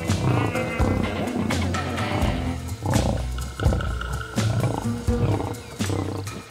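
A lion growling and calling over documentary music, which has steady low tones and sharp percussive hits.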